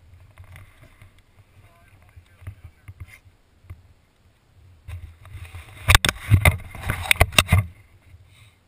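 Dirt bike engine idling with a steady low hum while the bike turns slowly on a dirt trail. Faint voices are heard early on. About five seconds in comes a burst of loud, sharp knocks and rattles that lasts a couple of seconds.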